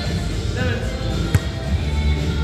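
Music plays over voices in a gym, and about a second in a volleyball lands one sharp smack.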